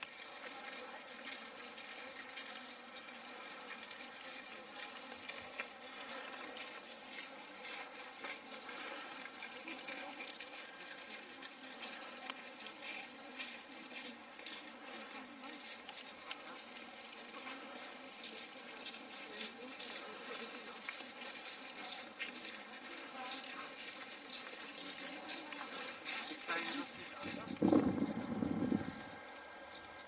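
A steady buzzing hum with faint crackling throughout, and a louder low rumble a couple of seconds before the end.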